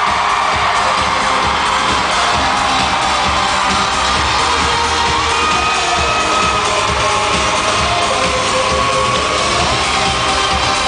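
Live dance-pop music played loud through an arena sound system, with a steady bass beat, heard from among the crowd while fans cheer and scream.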